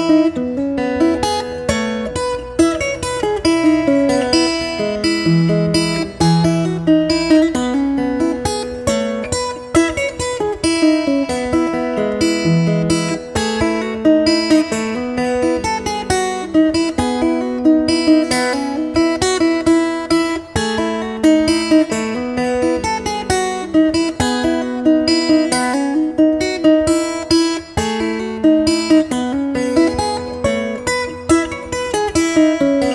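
Custom steel-strung solid walnut baritone ukulele played fingerstyle solo: a steady run of quick plucked notes, low bass notes under a higher melody.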